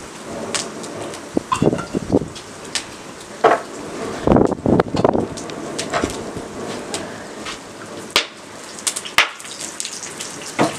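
Wood fire crackling in an open brick mangal, with irregular sharp snaps and pops and a few heavier knocks of handling about halfway through.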